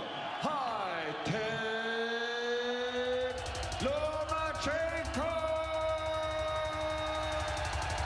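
Music: a drawn-out vocal line with long held, swooping notes, and a fast, driving beat that comes in about three seconds in.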